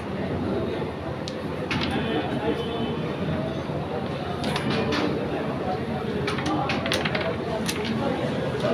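Sharp wooden clacks of a carrom striker hitting carrom men and knocking against the board, several of them in short clusters, over a steady murmur of voices.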